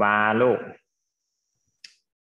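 A woman's voice speaks a few words briefly, then after a pause a single short, sharp click near the end from a computer mouse button.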